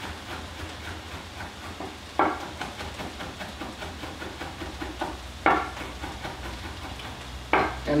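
Chef's knife chopping green onions and water chestnuts on a wooden cutting board: a quick, steady run of light chops with a few louder knocks, over a faint sizzle of ground turkey frying in a pan.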